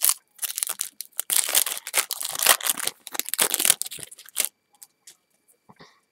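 Foil wrapper of a Topps football card pack being torn open and crinkled: a crackling rustle lasting about four seconds. After that come a few faint clicks as the cards are handled.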